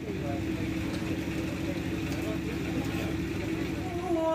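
A steady low hum holding one pitch under indistinct voices.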